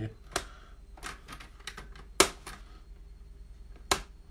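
A few sharp plastic clicks and taps from a paper trimmer as its cutting rail is handled and cardstock is lined up under it, the loudest click just past two seconds in.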